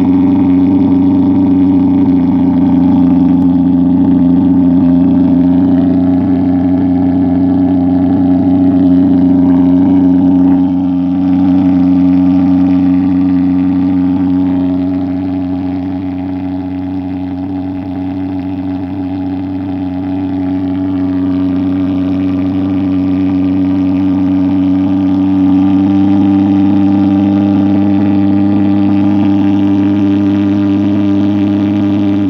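Portable IZ thermal fog machine's pulse-jet engine running: a loud, steady, deep buzzing drone. It eases off a little about a third of the way in and then builds back up.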